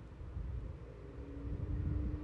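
Low background rumble with a faint steady hum that comes in about a second in; no distinct clicks or other events.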